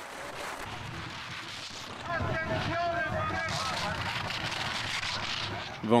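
Downhill race sound: skis hissing over icy snow at speed, with wind rushing past. From about two seconds in, a spectator crowd grows louder, with horns blowing in wavering tones and cheering.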